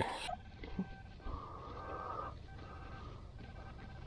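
Handheld metal-detecting pinpointer giving a faint alert tone as it is probed into wood mulch over a buried target. The tone strengthens about a second in, holds for about a second, then carries on weaker.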